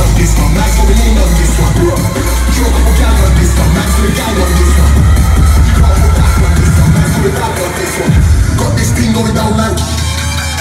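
Loud dubstep playing over a concert sound system, with a heavy sustained sub-bass. About eight seconds in, a sharp downward pitch sweep drops the bass.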